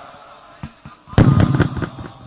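A quick, irregular string of loud sharp cracks and pops, starting just after a second in and crackling on to the end.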